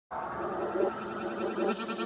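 Intro of a hip-hop track: a warbling, pitched sample that comes in abruptly just after the start and holds at a fairly steady level.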